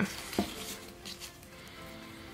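Soft background music with sustained notes, over light rustling and small taps of artificial greenery and paper being handled on a tabletop, mostly in the first second.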